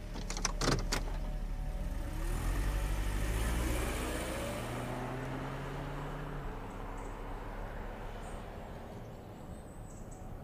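Car pulling away: a few sharp clicks in the first second, then the engine running and rising in pitch as the car accelerates, loudest a few seconds in and fading steadily as it drives off.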